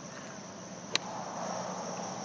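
A single crisp click of a golf club striking the ball on a full swing, about a second in, over a steady high-pitched drone of insects.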